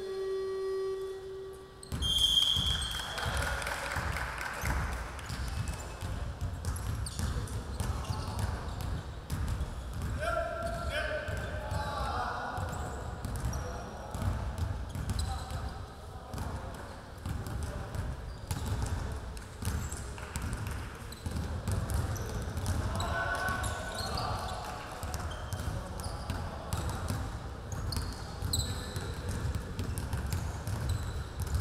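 Several basketballs bouncing on a hardwood gym floor in a continuous, irregular patter of dull thuds, with players' voices calling out now and then.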